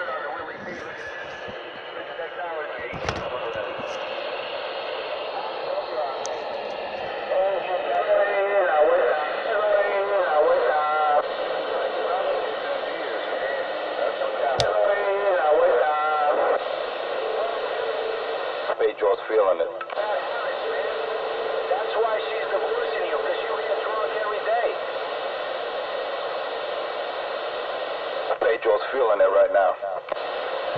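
Indistinct speech, thin and narrow-sounding like a voice coming over a phone or small speaker, running on with short pauses. One sharp click about halfway through.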